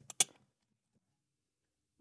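A single brief click about a fifth of a second in, then near silence.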